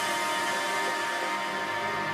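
Handheld electric rotary tool (a HILDA compact mini drill) running at speed with a steady high whine, with electronic background music underneath.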